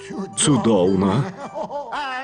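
A cartoon character's voice chuckling, a short snicker lasting a bit over a second.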